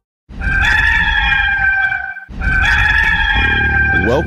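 Rooster crowing twice in succession, each crow a long, steady call of nearly two seconds.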